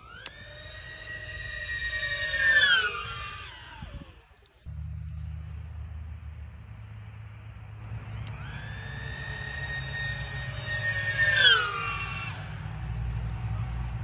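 A custom-built 5-inch 6S FPV racing drone's motors whining as it flies past at high speed, twice. Each pass is a high steady whine that drops sharply in pitch as the drone goes by, loudest at the moment of passing; the second pass clocks about 100 mph.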